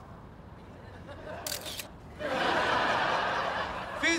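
A camera shutter clicks about a second and a half in, the photo going off on its self-timer. Then a studio audience laughs loudly to the end.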